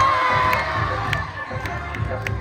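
A crowd of schoolchildren cheering and shouting. A long high whoop is held at the start and fades about half a second in, over a steady low beat of dance music.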